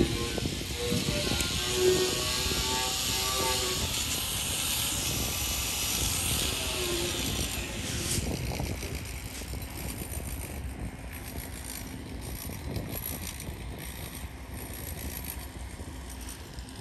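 Open-air construction-site ambience: a steady hiss over a low rumble, the hiss easing off about halfway through, with a faint distant voice in the first few seconds.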